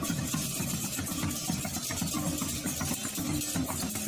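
Balinese processional gamelan (baleganjur) played on the march: a dense, rapid run of percussion strokes over a few held low tones, going without a break.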